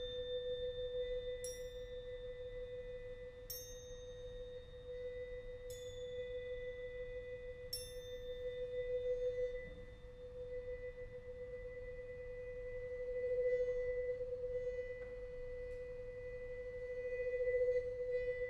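A vibraphone bar bowed with a string bow, sounding one pure sustained tone that swells and eases several times. In the first half, small metal plates on stands are struck lightly four times, about every two seconds, each strike ringing high over the bowed tone.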